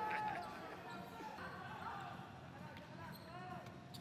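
A basketball bouncing on a hardwood court during live play, heard faintly, with faint voices of players and bench behind it.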